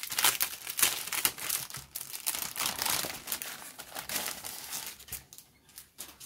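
Clear plastic bag crinkling and rustling as paperwork is slid out of it. The crinkling dies down near the end.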